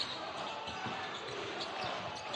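A basketball being dribbled on a hardwood court, faint knocks under a steady hum of arena noise.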